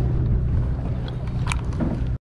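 Sport fishing boat's engine running with a steady low drone, with wind on the microphone. A single sharp click comes about one and a half seconds in.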